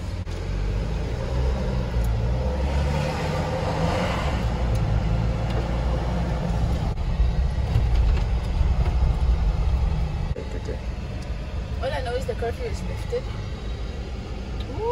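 Car engine and road noise heard from inside the cabin while driving, a steady low rumble that swells through the middle. A short stretch of voice comes near the end.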